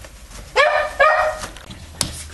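A dog barking twice, two short barks about half a second apart.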